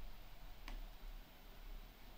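A single short click about a second in, over faint steady hiss and a low mains-like hum.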